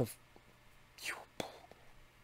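A man's speech breaks off on a drawn-out "a…", followed about a second later by a short breathy, whispered sound and, just after it, a single sharp click.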